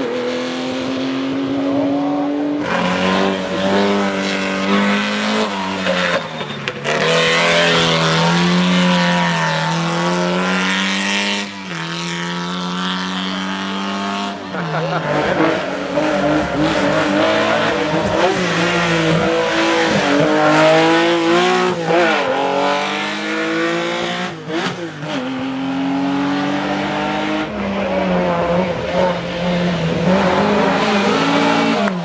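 Historic rally cars, a Porsche 911's flat-six among them, revving hard through tight hairpins, one after another. The engine note climbs and drops again and again with gear changes and lifts off the throttle for the bends.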